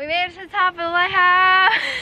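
A young woman's high-pitched, wordless exclamation. It rises at first, holds level for about half a second and breaks off near the end, followed by a brief hiss.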